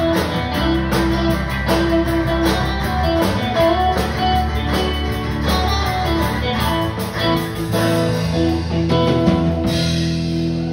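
Live country band playing an instrumental passage: electric and acoustic guitars and bass over a drum kit keeping a steady beat.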